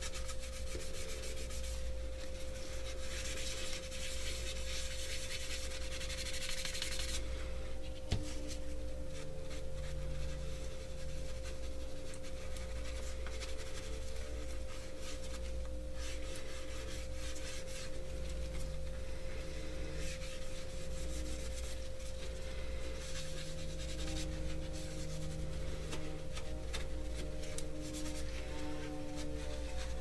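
Wadded paper towel rubbing silver Rub 'n Buff wax onto a 3D-printed ABS plastic plate in small circular strokes: a soft, continuous scrubbing, a little louder a few seconds in. A steady low hum runs underneath.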